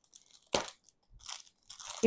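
Scissors cutting through a clear plastic saree packet, the plastic crinkling: one sharp crunching snip about half a second in, then softer crackles.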